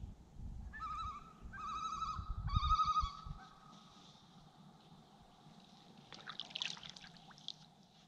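Common loon giving its quavering tremolo call, three wavering phrases in quick succession in the first few seconds. A short, rough, scratchy sound follows near the end.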